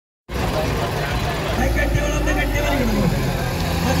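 Tractor diesel engines running steadily, a low even hum, with a crowd talking over it.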